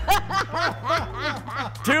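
A person laughing in a quick string of short chuckles, with a low steady hum underneath.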